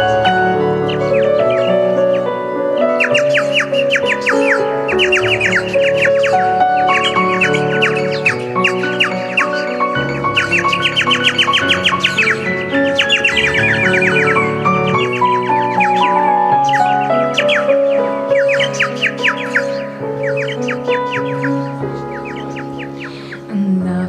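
Instrumental break on keyboard and a hand-cupped mouth instrument: the keyboard holds sustained chords, while the mouth instrument plays a solo of fast, high chirping runs that come and go in phrases.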